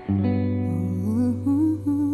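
A woman humming a wordless melody into the microphone over an electric guitar chord that is struck just at the start and left to ring.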